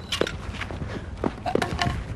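Sounds of a doubles tennis rally: several short, sharp knocks from the ball and racket and the players' footsteps on the court.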